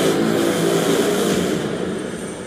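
A loud, harsh, sustained drone with a low buzzing pitch, a trailer sound-design hit held under the title card, easing off slightly near the end.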